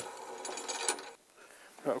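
Ratchet wrench clicking rapidly for about a second as it undoes a motorcycle brake caliper mounting bolt, then stopping.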